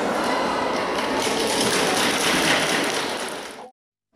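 Audience applauding in a large sports hall, a dense patter of clapping that swells about a second in and then fades out near the end.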